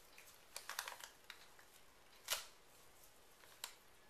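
Cat chewing and tearing a newspaper: faint, scattered crinkles and small rips of paper, with the loudest about two and a half seconds in.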